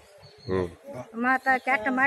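A woman speaking in an interview, after a brief pause with a short voiced sound about half a second in.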